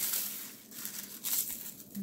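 Dried shiso leaves rustling and crackling as they are crumbled by hand in a plastic bowl. The crackling is thickest at first, dips, then comes back as scattered crunches.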